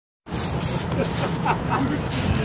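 Outdoor traffic noise with a rough, steady rumble on the microphone and faint voices, starting after a moment of dead silence.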